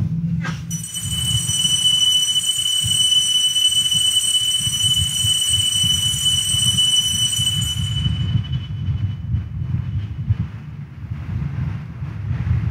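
A metal altar bell struck once, its high ring holding steady and then dying away over several seconds. It marks the elevation of the consecrated host at Mass. A steady low rumble runs underneath.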